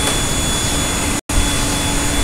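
Steady hiss of background noise with a low hum under it, the noise floor of the voice recording between sentences. It drops out for an instant a little past halfway, then resumes.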